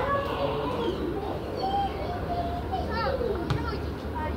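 Young footballers' voices shouting and calling out across an open pitch, high-pitched and drawn out, with a single sharp knock a little after three seconds in.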